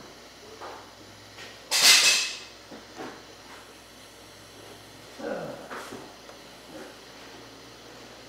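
Small handling and rubbing noises from working a crimped wire terminal and its insulation sleeve by hand. One short, loud rush of hiss-like noise comes about two seconds in.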